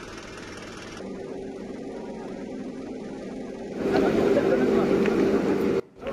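A vehicle engine running steadily, with a crowd's voices and commotion; it gets much louder about four seconds in and cuts out briefly near the end.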